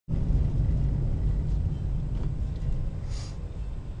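Low rumble of a car's engine and tyres heard from inside the cabin while driving, easing slightly as the car slows. A brief hiss about three seconds in.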